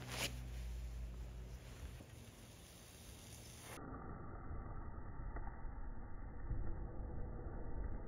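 Faint hiss and crackle of a potassium permanganate and glycerin mixture reacting, smoking heavily and starting to flame, growing louder over the last few seconds.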